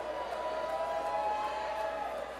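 Concert crowd cheering, with a few long held whoops over the noise.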